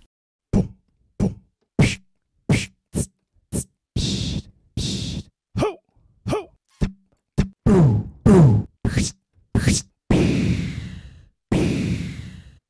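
A man's voice making short, separate beatbox-style sounds into a microphone, about twenty of them one at a time with silence between. They include short thumps and clicks, two longer hisses and a few voiced hits that drop in pitch, recorded one by one as samples to be played from pads like an instrument.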